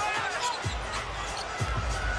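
A basketball being dribbled on a hardwood court, a few low thumps, over arena background noise.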